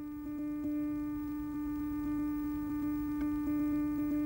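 A single sustained droning note with faint overtones, held steady in pitch and slowly growing louder: a drone in the film's score.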